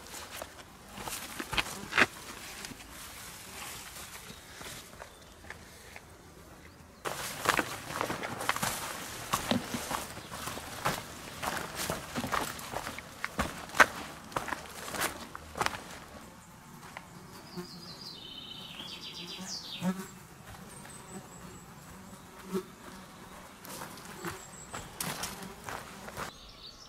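A hiker's footsteps on a rocky forest path, with the rustle of low plants brushing his legs. An insect buzzes around him, most plainly in the second half.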